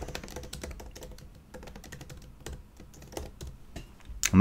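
Typing on a computer keyboard: a quick, steady run of light keystrokes, about five a second, as a short phrase is typed.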